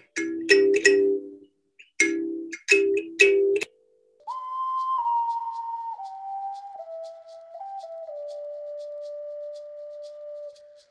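Kalimba (thumb piano) with its metal tines struck by the thumbs, six times, each strike sounding several notes at once as a ringing chord. A little past four seconds in, a single held whistle-like tone starts and steps down in pitch, running on to the end.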